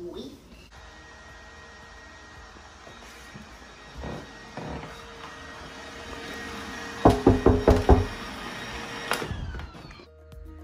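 A quick run of about seven sharp knocks on wood within a second, over a steady room hum, with two softer thuds a few seconds earlier.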